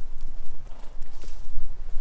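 Racehorses' hooves clip-clopping at a walk on a gravel track, a few irregular knocks, over a steady low rumble.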